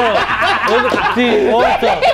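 Several men laughing and chuckling together, their laughs overlapping with bits of speech.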